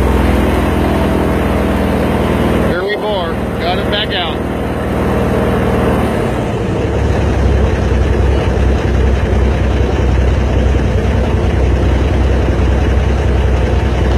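Swamp buggy engine running under way, a steady drone heavy in the low end; about six seconds in its tone changes as the higher lines drop out and the low rumble strengthens.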